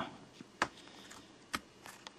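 Two short clicks, about a second apart, of a small electret microphone capsule being pressed into the hole of a plastic tube cap.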